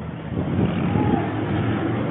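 Low, steady rumble of outdoor background noise that grows louder about half a second in.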